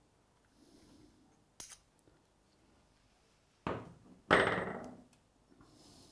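Metal objects clanking in a workshop: a light click, then two sharp metallic clanks about half a second apart, the second the loudest, ringing briefly as it dies away.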